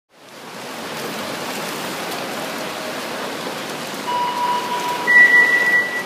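Steady rush of water noise in an indoor swimming pool hall, as swimmers splash through their lengths. About four seconds in a steady high tone sounds, and a second, higher and louder tone joins about a second later.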